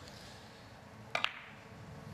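A carom billiard shot: two sharp clicks in quick succession about a second in, as the cue tip strikes the cue ball and the cue ball meets an object ball.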